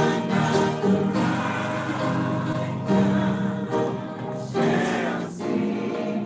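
Church choir singing a gospel song, holding long notes in phrases.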